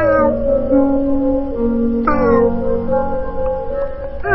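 A novelty 'cat music' song: meows sung to a tune over a steady backing track. Two falling meows stand out, one at the start and one about two seconds in.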